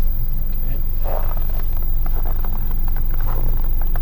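Steady low rumble of wind on a handheld microphone outdoors, with a few faint clicks and taps of handling.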